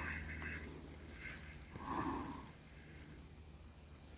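Faint scratchy rubbing of a glue stick on folded paper, with paper handling, in short strokes at the start and about a second in, and a softer dull sound about two seconds in. A steady low hum runs underneath.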